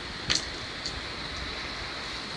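Steady hiss of background room noise, with one brief click about a third of a second in and a fainter tick a little later.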